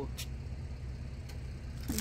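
Steady low hum of an engine running, with a couple of faint clicks from signs in plastic sleeves being flipped through in a bin.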